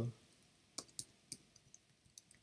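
About four soft, separate key clicks on a computer keyboard spread over a second: typing and backspacing in a search box.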